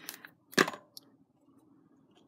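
A plastic liquid-glue bottle set down on the craft mat: one sharp knock about half a second in, then a faint click.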